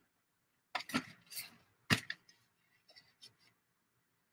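A few short, quiet scratching and rustling strokes of paper being handled and marked, followed by a couple of faint ticks.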